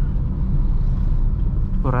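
Low, steady rumble of a manual Honda car's engine and tyres heard from inside the cabin, cruising in second gear at a steady low speed. A man's voice starts near the end.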